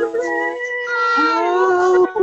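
Women's voices singing a cappella in worship: drawn-out, wordless notes, with one voice sliding upward in pitch about halfway through.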